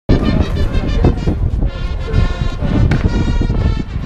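A Bersaglieri brass fanfare playing sustained chords, heard most clearly from about two seconds in, under a loud low rumble of wind buffeting the microphone.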